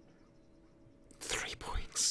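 About a second of near silence, then a man's breathy whispering starts a little past a second in.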